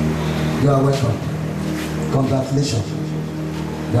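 A man's voice heard over a microphone and PA, in short phrases, with a steady low drone underneath.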